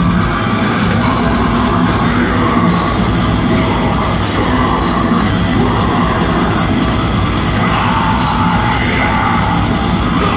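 Heavy metal band playing live through a PA, heard loud and unbroken from within the crowd.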